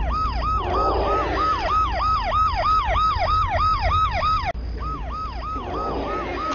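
Electronic siren in a fast yelp: a rapid up-and-down wail repeating about four times a second, breaking off briefly about four and a half seconds in and then resuming, with a steady low hum underneath.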